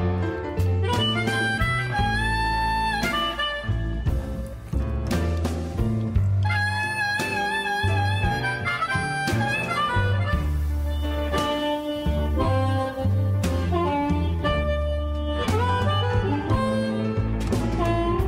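Blues recording in an instrumental stretch: a harmonica plays held, wavering notes over bass and drums.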